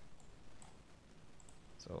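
A few faint, sharp computer mouse clicks against low room tone.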